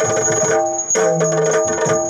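Yakshagana instrumental accompaniment: rapid maddale drum strokes over a steady drone.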